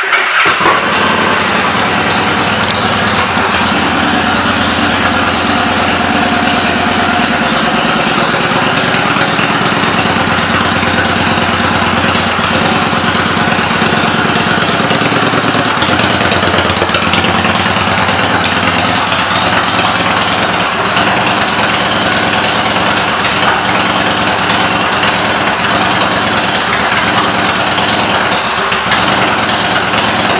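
Victory Vegas 8-Ball's 106-cubic-inch V-twin idling steadily through an aftermarket exhaust, just after being started.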